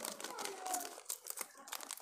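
Plastic snack packet crinkling in the hands as it is opened, a run of irregular crackles and rustles.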